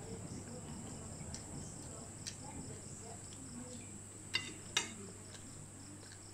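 Crickets chirping steadily: a high continuous trill with an even, rapid pulse. Two sharp clinks of a metal spoon on a plate come about four and a half seconds in.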